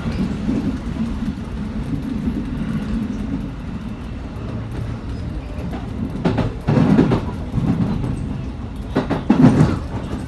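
Electric commuter train running on rails, heard from behind the driver's cab: a steady rumble of wheels and motors. Twice, around the middle and near the end, it turns to a louder clatter as the wheels run over points and crossovers.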